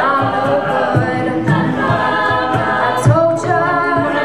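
Mixed-voice a cappella group singing live: a lead voice over sustained backing harmonies, with a steady vocal-percussion beat of low thumps about twice a second.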